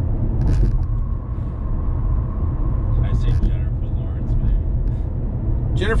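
Steady low road-and-engine rumble inside a moving car's cabin, with a short laugh about a second in.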